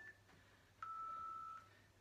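A single electronic beep about a second in: one steady, fairly high tone lasting under a second, typical of a workout interval timer marking the end of a rest and the start of the next exercise.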